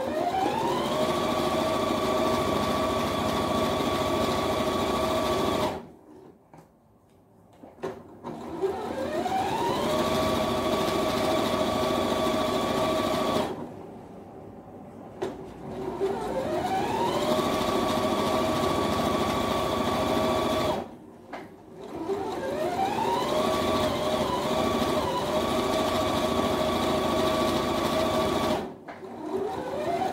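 Electric sewing machine stitching a seam in four runs of about five seconds each, with short pauses between them. At the start of each run the motor's whine rises in pitch, then holds steady.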